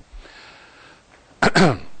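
A man clears his throat once, a short harsh burst about one and a half seconds in.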